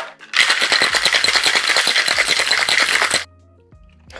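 Ice rattling hard in a metal cocktail shaker tin set as a cocktail is shaken. The rapid, steady strokes last about three seconds and stop abruptly.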